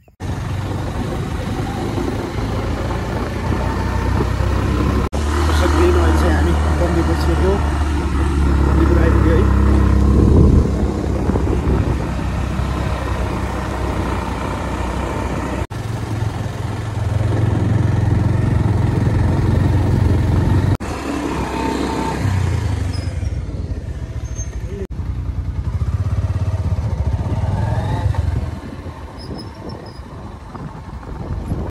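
Motorcycle running as it is ridden along a road, a loud low rumble that starts abruptly and jumps in level several times.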